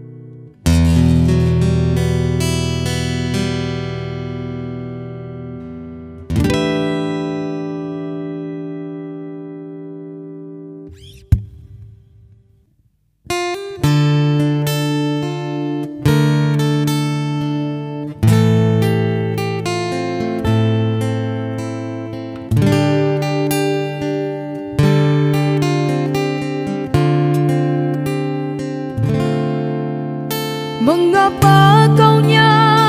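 Solo acoustic guitar. Two chords are strummed and left to ring and fade as one song closes, then a click and a couple of seconds of near silence. A new song's intro follows, with a chord strummed about every two seconds.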